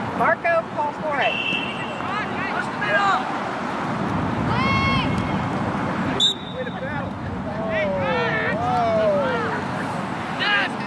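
Short shouts and calls from several voices at intervals over steady outdoor background noise, with one longer call that slides in pitch near the end.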